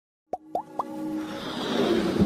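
Intro sound effects for an animated logo: three quick rising plops, one after another, then a swelling riser that grows steadily louder.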